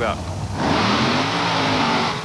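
Two monster trucks launching side by side from a drag-race start line. About half a second in their engines go suddenly to full throttle and stay loud, revving hard.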